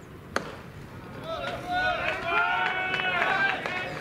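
A single sharp crack of a pitched baseball striking at home plate, then from about a second in several voices calling out together for about two seconds.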